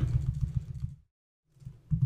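Computer keyboard typing: a few light key presses over a low hum, broken by a short stretch of dead silence about halfway through.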